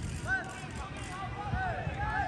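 Footballers calling out to each other during a passing drill: short shouted calls, about twice, over a steady low rumble.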